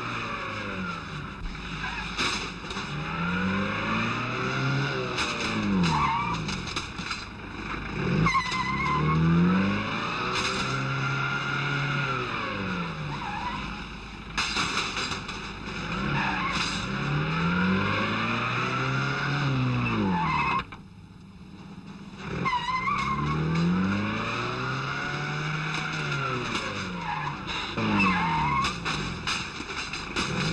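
Car chase engine sounds: motor vehicle engines revving up and down over and over, rising and falling in pitch every few seconds, with tyres skidding. The sound drops out briefly about two-thirds of the way through.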